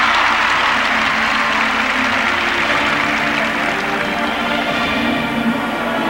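Arena crowd applauding a landed triple lutz jump, the applause strongest at first and fading over about four seconds, over the skater's program music playing steadily.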